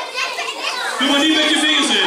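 Children's voices chattering and calling out in a large hall, with a long drawn-out voice from about halfway through.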